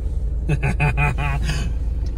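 Diesel engine of a 1996 Toyota HiAce Super Custom van running with a steady low rumble as it pulls away, heard from inside the cab. A man laughs in a quick run of short bursts through the middle.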